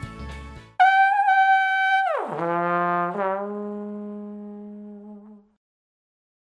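Comic brass sound effect: a held high horn note that slides steeply down to a low note, which fades out, a cartoon 'fail' sting.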